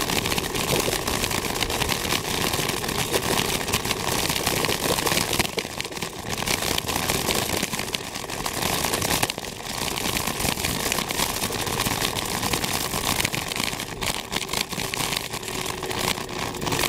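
An M365-type electric kick scooter ridden at speed up a steep hill over rough tarmac: steady wind buffeting on the microphone mixed with tyre and road noise, broken by frequent jolts and rattles.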